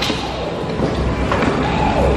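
Amusement arcade din: a mix of game-machine sounds and music over a steady low rumble, with scattered short tones and knocks.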